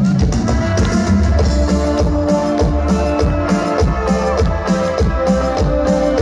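Live band music played loud: a drum kit keeping a steady beat under electric guitar and held keyboard chords.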